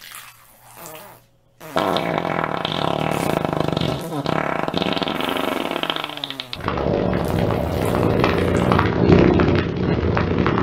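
Two long, loud fart sounds: the first starts about two seconds in and lasts about five seconds, and the second follows almost at once and runs on to the end.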